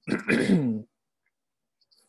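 A man coughs once, a short harsh cough lasting under a second.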